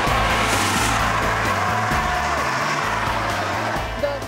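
CO2 fire extinguisher discharging through its horn in one continuous loud hiss, used as a thrust jet to push a skater along.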